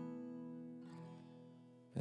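The closing strummed chord of an acoustic guitar ringing out and fading away.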